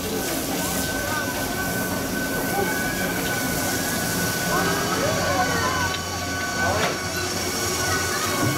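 Distant voices over a steady mechanical hum with a high, level whine that stops about three quarters of the way through.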